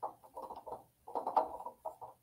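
A paint brayer being rolled through wet paint in an aluminium foil tray, mixing the colours, heard as short, irregular bursts of sticky crackle.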